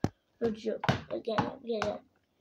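Mostly a woman's voice talking in a playful character voice, words not made out, with a single short knock at the very start.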